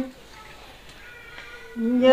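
Dao folk singing (hát tiếng Dao) in a woman's voice: a long held note ends at the very start, then a pause of about a second and a half with only faint room sound, and the next sung phrase begins on a steady held note near the end.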